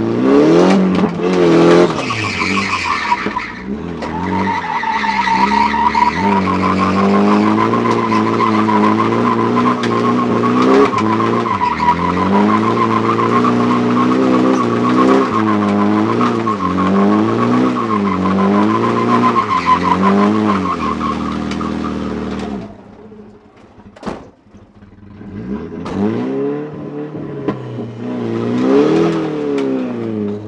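Nissan Silvia S14's SR20 four-cylinder engine, heard from inside the cabin, revving hard with its pitch swinging up and down as the car is drifted, over a steady tyre squeal. About three-quarters of the way through the engine suddenly drops away to a low idle, then is revved briefly twice near the end.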